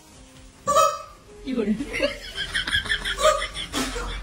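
A short vocal outburst, then a run of laughter in rapid, high-pitched bursts, about five a second, ending on a loud cry.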